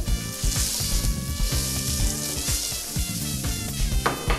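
Butter melting and sizzling in a hot frying pan, a steady high hiss, under background music with a regular beat.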